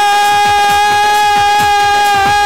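A woman singing one long held note into a microphone in a Telugu Christian worship song, over a quick, steady drum beat.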